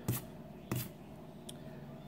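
A silver dollar scraping the latex coating off a scratch-off lottery ticket: two short scratches, the second about half a second after the first.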